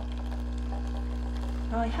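De'Longhi fully automatic espresso machine running its pump while it dispenses a long coffee into a mug: a steady, even hum.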